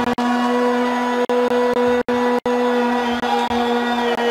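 A steady, loud droning tone with overtones, held at one pitch and cut off briefly several times.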